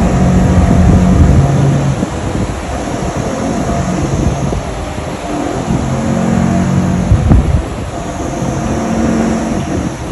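A steady low mechanical rumble with a low hum that swells and fades a few times.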